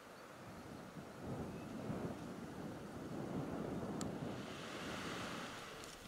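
Wind noise on the microphone: an uneven low rumble that builds about a second in and eases near the end, with one faint click about four seconds in.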